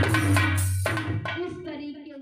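Live Indian devotional song with harmonium, keyboard and drum accompaniment. The drum beat stops about a second in and the music fades out, while a woman's singing voice trails on quietly near the end.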